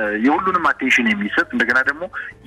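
Only speech: a voice talking steadily in Amharic with the narrow, boxy sound of a radio broadcast.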